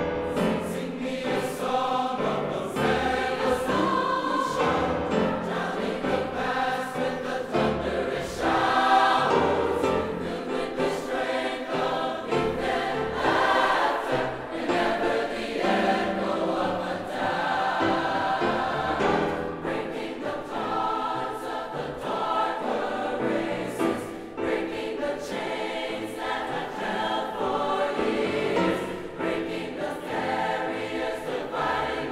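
A large mixed choir of young voices singing in full harmony with piano accompaniment, the sound full and steady with the hall's reverberation.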